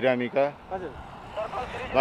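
A motor scooter passing close by, its engine heard under men talking and growing louder in the second half.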